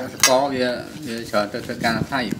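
Metal spoon clinking and scraping against a ceramic plate of rice, a few sharp clinks, with a voice talking over it.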